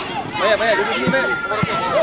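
Many voices shouting and calling over one another on the sideline and pitch of a children's football match, with two short thuds about a second in and again half a second later.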